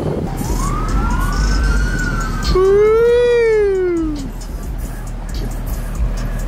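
A siren wailing: a tone rising for about two seconds, then a louder tone that swells and falls away by about four seconds in, over the low noise of street traffic.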